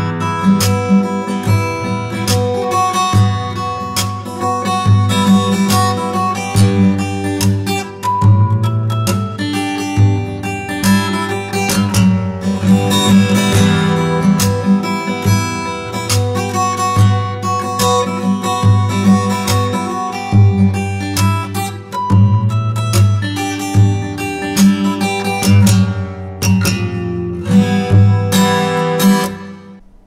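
Fingerstyle acoustic guitar piece, a melody over a steady pulsing bass line, played from a pre-recorded track. It cuts off suddenly just before the end.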